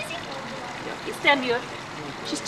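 A short phrase of speech about a second in, over a steady background hiss.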